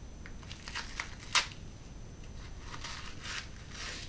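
Paper gift wrapping being torn and crumpled by hand as a small wrapped item is unwrapped: scattered rustles and crackles, with one sharp crackle about a second and a half in and a longer bout of rustling near the end.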